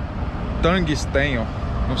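A man's voice in two short utterances over a steady low outdoor rumble.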